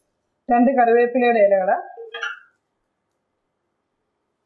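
A woman's voice speaking for about two seconds, then silence.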